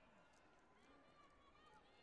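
Very faint, distant voices in a large sports hall, with no one speaking close by.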